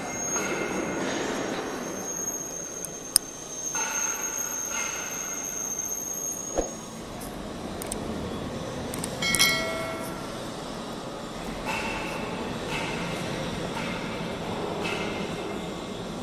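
Welded square pipe roll forming line running: a steady mechanical noise from the roll stands and drives, with a thin high whine through the first half, a sharp click about three seconds in, and a brief squeal a little after nine seconds.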